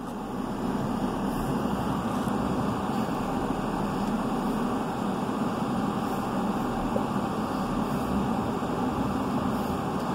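Steady car cabin noise: engine and road noise heard from inside a car being driven.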